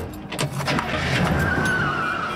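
Film soundtrack of a car driving, with sharp clicks and knocks and a high squeal coming in near the end, over music.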